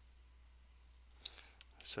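Faint room tone with a steady low hum, broken about a second and a quarter in by a short click of a stylus on a tablet as the next line starts to be written, then a breath and the start of a spoken word at the very end.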